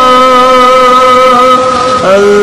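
Devotional Sufi song sung in Punjabi, holding one long note at a steady pitch.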